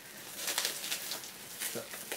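Packaging being pulled off a parcel by hand: faint, scattered rustling and crinkling of the wrapping, with a short low murmur near the end.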